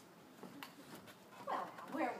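A short burst of a person's voice about a second and a half in, after a quiet stretch with a few faint clicks.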